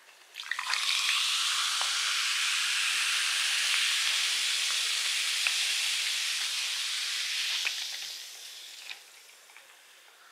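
Dark carbonated soda poured from a can over ice into a glass mug, fizzing in a steady hiss. It starts about half a second in and dies away about eight seconds in.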